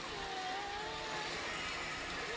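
Steady din of a pachinko parlor: machines and steel balls rattling, with one wavering held tone in the first second.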